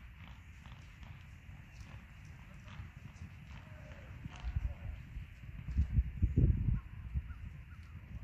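Hoofbeats of a small herd of loose horses running across a grassy field, heard as low thuds that grow louder past the middle and then fade.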